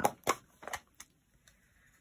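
A few light clicks and taps in the first second as stamping supplies are handled on a craft desk.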